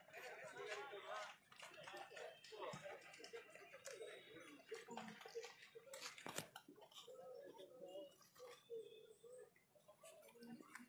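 Near silence with faint, distant voices of men talking, and one light knock about six seconds in.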